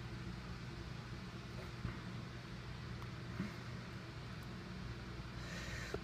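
Steady low room hum and hiss, with faint handling rustles and a couple of soft taps, about two and three and a half seconds in, as hands squeeze an iPhone 6.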